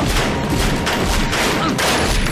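Rapid handgun gunfire, shots following one another several times a second.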